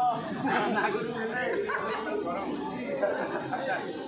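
Speech: voices talking in a seated group, with chatter.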